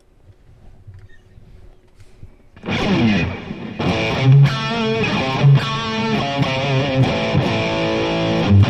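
Red Kramer electric guitar played with a heavily distorted tone, coming in loud about two and a half seconds in after a quiet start, with sustained, ringing chords and notes that change about once a second.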